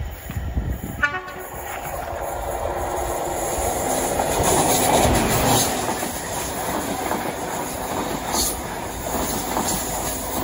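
Diesel-hauled train of coaches approaching and passing close by at speed, with a brief horn note about a second in. The sound builds to its loudest near the middle, then the wheels of the passing coaches clatter and rumble along the rails.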